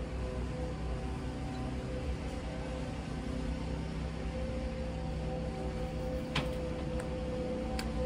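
Steady low drone of distant lawn mower engines, with two faint clicks near the end.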